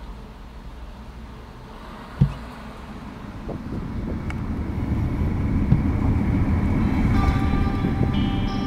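A single low thump about two seconds in, then the low rumble of a car heard from inside the cabin, growing steadily louder. Soft music comes in near the end.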